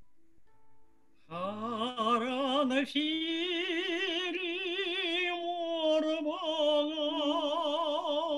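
A woman's solo voice singing a slow Crimean Tatar song, starting about a second in, with long held notes and a wide vibrato.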